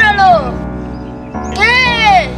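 A boy's high, drawn-out voice sliding in pitch: one call falling away in the first half-second and another rising and falling about one and a half seconds in, over background music with a steady held chord.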